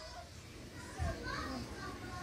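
Faint children's voices and chatter in a quiet room, with one brief low thump about a second in.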